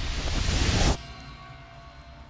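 A loud rushing whoosh from a film's magic-spell sound effect, like a blast of wind, cutting off abruptly about a second in. A quiet low drone from the film's background score follows.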